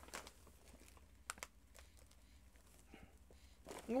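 Faint crinkling and small crackles of a plastic snack bag of pretzels being handled and lifted, with one sharper crackle about a second in.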